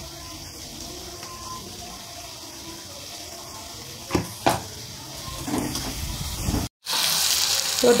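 Low kitchen background with two light knocks a little past halfway, then, after a brief dropout, sliced onion and capsicum sizzling in oil in a wok as they are stirred with a spatula, loud from about seven seconds in.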